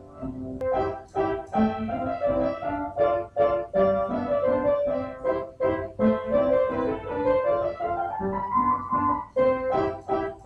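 Background music: a keyboard instrument playing a tune of short, quickly repeated notes.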